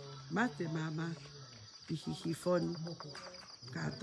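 A steady, high-pitched insect trill, as of crickets at night, runs throughout under snatches of a woman's speaking voice.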